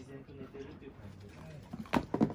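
Akita dog making low, drawn-out grumbling vocalizations during play. A sudden loud noise comes near the end.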